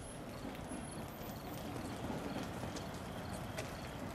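Steady, even background noise of an outdoor night scene, with one faint tick near the end.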